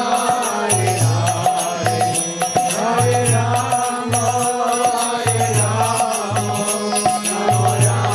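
Devotional kirtan: a voice chanting a melody over a held drone, with a low drum figure repeating about every two seconds and a steady high jingling percussion on the beat.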